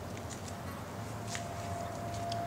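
Room tone of a large indoor space: a steady low hum with a faint thin tone above it, and a few light ticks.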